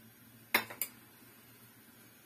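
Two quick metallic clinks of kitchen utensils, about a quarter second apart, a little past half a second in.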